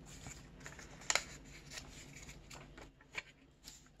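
Colored paper being handled and laid on a tabletop: faint rustling with a few soft taps and clicks, the clearest about a second in.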